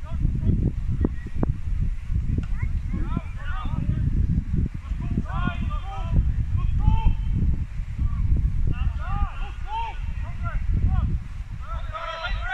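Footballers' shouts and calls carrying across an open pitch, short and scattered, over a steady rumble of wind on the microphone. A few sharp knocks come about a second in.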